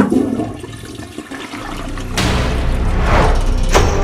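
Toilet flushing: a rush of water that starts about two seconds in and swells, still running as it ends.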